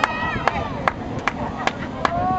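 A spectator's hand claps, sharp and evenly paced at about five claps in two seconds, with voices in between.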